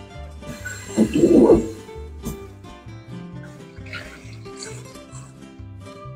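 Background music with a plucked-string beat. About a second in there is a short loud burst, and near the middle a brief hiss of water spraying onto hominy in a metal mesh colander in a sink.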